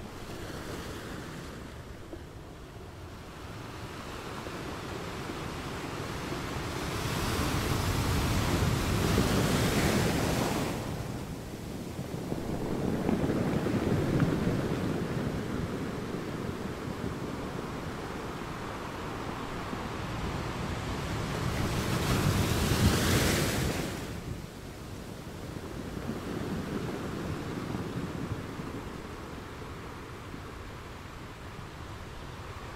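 Ocean surf breaking on a rocky, pebbly shore, rising and falling in slow swells. The loudest breakers come about ten seconds in and again around twenty-three seconds, the second ending abruptly.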